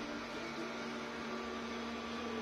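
Steady low electrical hum with a faint hiss: background room tone.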